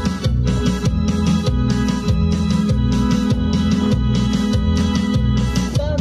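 Chilena dance music played on electronic keyboards: sustained organ-like chords over a heavy bass line, with a steady beat about twice a second.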